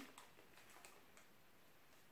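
Near silence with a few faint ticks in the first second or so: a plastic spoon scooping urea crystals in a plastic bag.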